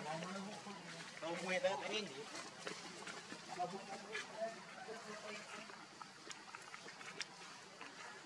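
Indistinct human voices talking, clearest in the first two seconds, then fainter and broken up, with a few small clicks.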